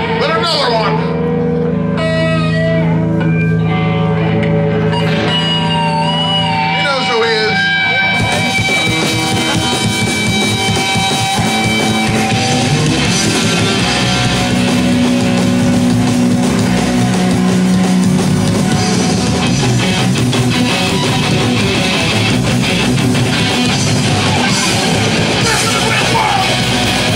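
Live punk band starting a song: electric guitar holding and bending notes at first, then the full band with drums and distorted guitars comes in about eight seconds in and plays on loudly.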